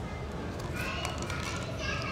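Children's voices in the background, high-pitched chatter and play starting a little before a second in, over a steady low background hum.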